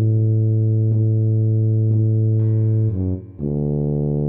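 A tuba part played back from sheet music at half speed: one long held low note for about three seconds, a short note, then another low note that starts just before the end.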